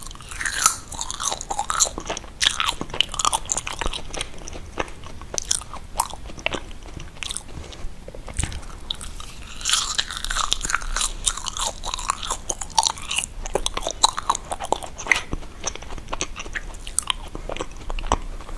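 Close-miked chewing of soft, foamy marshmallows: sticky, wet mouth sounds with many small clicks and smacks of lips and tongue, busiest about a second in and again around ten seconds in.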